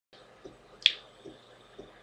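One short, sharp click a little before the middle, with a few faint soft taps around it in a quiet room.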